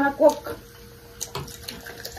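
Cola poured from a plastic bottle into a glass of ice, splashing and fizzing, with a few light clicks. A brief voice sound at the start is the loudest moment.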